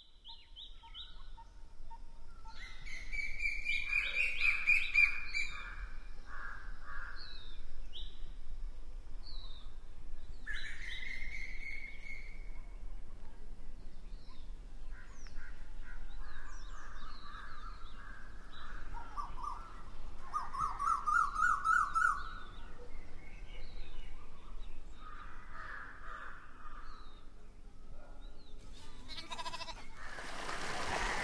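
Several birds calling and singing: a mix of chirps, short whistled notes and quick trills. The calls fade in over the first couple of seconds.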